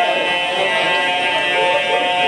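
A man's amplified voice reciting in a sung, chant-like style through a PA system, over a steady high buzz of many held tones.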